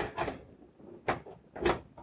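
A few short clicks and light knocks of a cable and connector being handled and fitted at the back of a rack-mounted backup drive.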